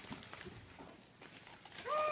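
Faint tapping and scraping of hands on a cardboard box as it is felt for an opening. Near the end, a voice begins a drawn-out, level-pitched sound.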